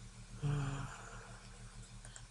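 Quiet room tone with a low steady hum, broken once about half a second in by a man's short hesitant "uh".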